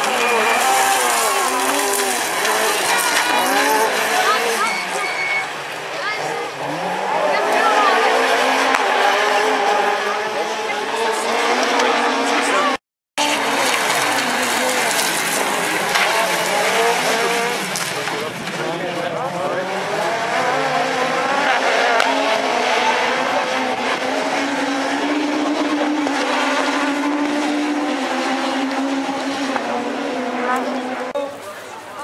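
Several rallycross car engines running hard together in a race, their pitch rising and falling as they rev through gear changes. The sound cuts out for an instant about thirteen seconds in.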